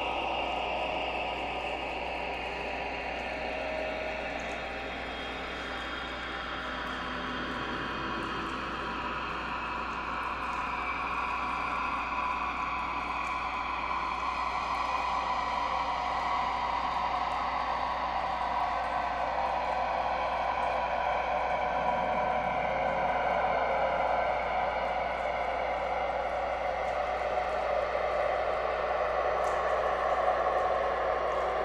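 Electronic drone soundtrack: several sustained tones slowly gliding downward in pitch, over a steady low hum, gradually growing louder.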